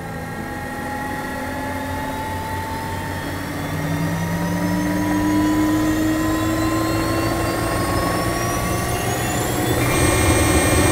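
A swelling drone of layered tones, all slowly rising in pitch over a low steady hum, growing louder about four seconds in: a trailer's riser building tension.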